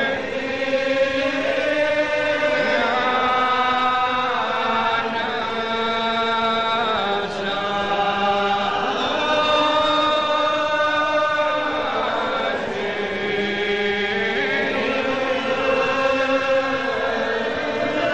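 A church congregation singing a psalm in Gaelic, unaccompanied, in slow long-held notes that slide from one pitch to the next, in the drawn-out style of Gaelic psalm singing.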